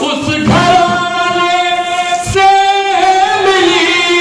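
A man's voice singing Urdu religious poetry in a slow melody over a microphone, with long held notes.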